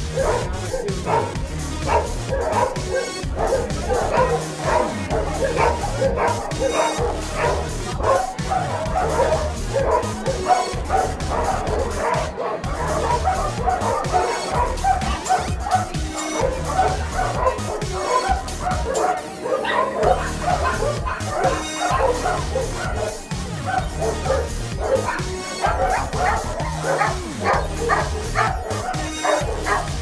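Many dogs barking and yipping continuously, many short overlapping barks, mixed with background music that has a steady low beat.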